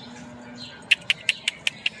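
A Labrador mix's claws clicking on a concrete sidewalk as she walks, a quick even run of about six clicks starting about a second in.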